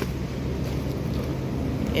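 Steady low hum of supermarket background noise beside a refrigerated meat case.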